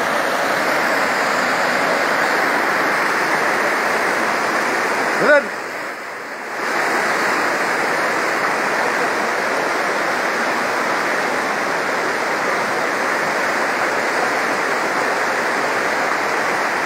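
Muddy floodwater rushing out of a cave spring in a loud, even torrent. About five seconds in there is a brief rising tone, after which the rushing dips for about a second and then resumes.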